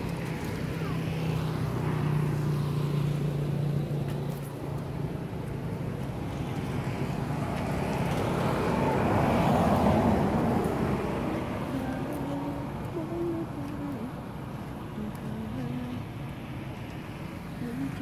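Road traffic: a motor vehicle passes, its noise swelling to a peak about halfway through and then fading, over a steady low hum.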